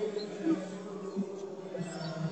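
Men's voices chanting together, holding a long low note as a steady drone.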